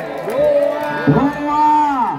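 A man's voice: the match commentator's drawn-out calls, with crowd noise beneath.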